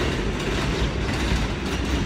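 An elevated New York City subway train running along its elevated track: a steady low rumble that holds throughout.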